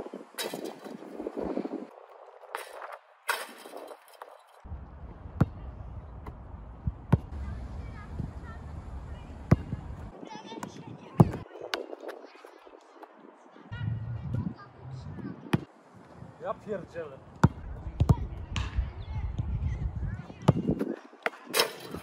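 Basketball bouncing on a hard outdoor court and striking the rim during dunk practice: sharp separate thuds, a second or more apart.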